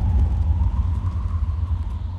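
Deep, steady low rumble with a faint high held tone above it, slowly fading: the closing sound design of a film trailer under its end title cards.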